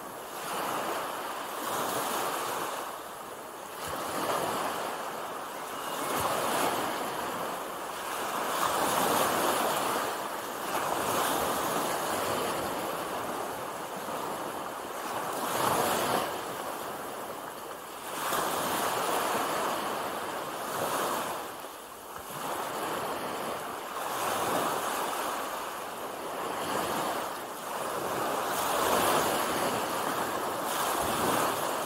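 Small waves breaking and washing up a sandy beach, the surf swelling and ebbing every two to three seconds.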